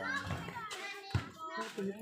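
Several voices talking and calling out at once, with one short thud about a second in.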